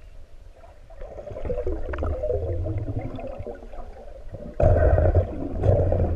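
Muffled underwater sound of water moving and gurgling around the camera as a free diver swims. It is quiet at first, rises about a second in, and jumps suddenly louder about four and a half seconds in.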